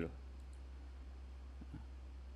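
Faint computer-mouse clicks, a couple of them about one and a half seconds in, over a low steady electrical hum.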